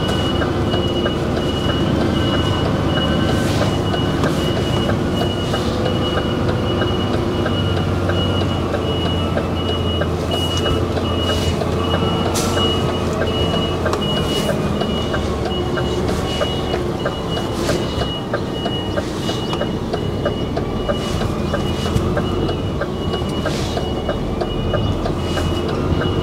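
A heavy goods vehicle's reversing alarm beeping in an even, repeating pattern over the steady rumble of the lorry's diesel engine, heard from inside the cab as the articulated truck manoeuvres at low speed.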